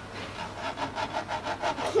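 A finger run back and forth over the bumpy, ridged roof of a small cardboard and paddle-pop-stick craft model. It makes a rapid, even rasping of ticks, about seven a second.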